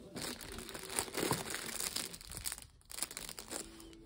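Clear plastic wrapping crinkling and rustling as giant pencils in plastic sleeves are handled and one is pulled out. It is busiest in the first two and a half seconds, breaks off briefly, then goes on more lightly.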